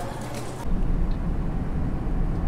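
Open-air street background, then a sudden change to a steady low rumble inside a van's cabin, typical of the engine running.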